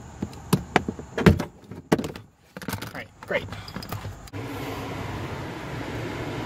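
Plastic cargo-area trim panel being pried loose with a plastic panel-popping tool: a string of sharp clicks and snaps as the panel and its clips are worked free. From about four seconds in there is a steady low background hum.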